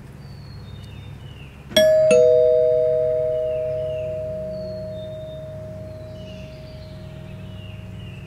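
Two-tone ding-dong doorbell chime: a higher note, then a lower one a fraction of a second later, nearly two seconds in. Both notes ring on and fade slowly over the next several seconds.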